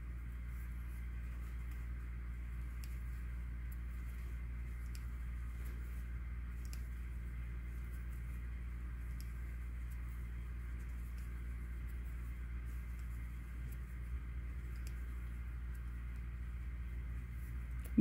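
Low, steady background hum of room tone with a few faint soft ticks scattered through it.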